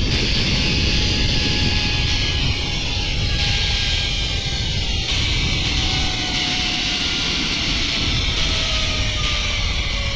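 Zipline trolley pulleys running along the steel cable with a steady whirring whine that falls slowly in pitch, under heavy wind rumble on the microphone.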